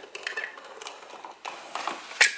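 Manual caulking gun clicking faintly a few times as its trigger is worked, laying a bead of silicone into the gap along a concrete slab's edge.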